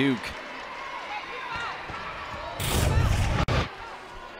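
Basketball arena crowd murmuring during a stoppage after a foul. About two and a half seconds in, a short loud rush of noise lasts under a second and cuts off abruptly, leading into the replay.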